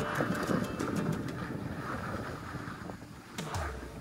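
Wind buffeting the microphone while skiing downhill, with the hiss of skis sliding over groomed snow. It eases off about three seconds in, then a low rumble of wind rises near the end.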